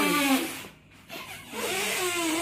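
Breath blown by mouth into the valve of an inflatable vinyl water play mat: a rushing, hissing sound with a short pause near the middle before blowing resumes.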